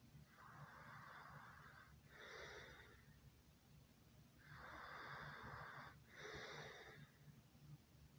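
Faint, slow breathing: four soft, airy breaths over about eight seconds, coming in pairs of a longer breath followed by a shorter one.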